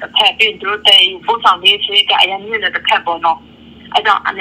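Speech only: a person talking over a telephone line, with the thin, narrow sound of a phone call, pausing briefly near the end.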